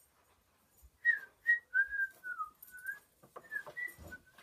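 A person whistling a short run of notes, starting about a second in, the pitch stepping down and then back up.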